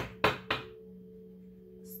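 Three quick sharp taps of a tarot deck being handled, in the first half-second, over a steady low two-tone hum.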